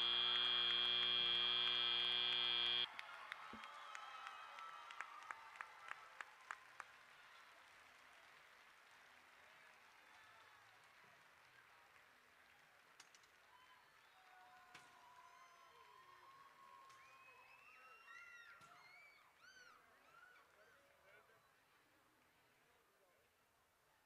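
Arena end-of-match horn sounding as one steady, loud tone for about three seconds and cutting off sharply, marking the end of the match. Crowd applause and cheering follow, fading, with a few scattered shouts near the end.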